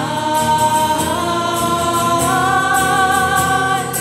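Church choir singing a hymn, the voices holding long notes together; the melody steps up in pitch about halfway through.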